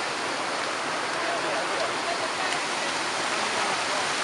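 Shallow mountain river rushing steadily over a rocky bed and around boulders in small cascades.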